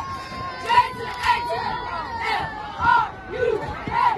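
Cheerleaders shouting a cheer together in short, rhythmic called-out phrases, with crowd noise around them.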